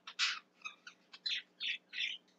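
A bird chirping faintly in a quick run of short high chirps.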